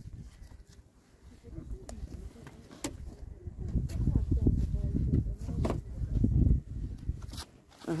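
Low, gusting rumble of wind buffeting the microphone, strongest in the middle of the stretch, with a few sharp knocks and footsteps as people step along the shore and into a fibreglass boat. Faint voices are heard underneath.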